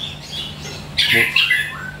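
Caged chestnut-capped thrush (anis kembang) calling: a few faint high chirps, then a louder harsh burst about a second in.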